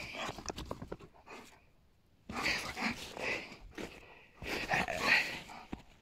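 A dog panting close by in three short spells, with a brief quiet gap about two seconds in.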